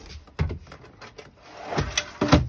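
Hinged wooden countertop being handled and folded down after its support post is pulled out: a sharp wooden knock about half a second in, a few light clicks, then a heavier thump near the end as the top comes down.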